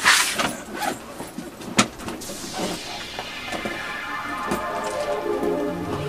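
Clicks and rustles of a handbag and its metal chain strap being handled and opened, with a sharp click about two seconds in. Background music then fades in with sustained chords and builds, a low pulsing bass entering near the end.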